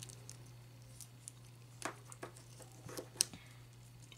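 Faint clicks and scrapes of small plastic action-figure parts being worked together as a swappable hand is forced onto the figure's tight wrist peg, with a sharper click about three seconds in.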